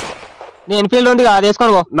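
A sudden burst of noise that fades away over about half a second, followed by a voice talking.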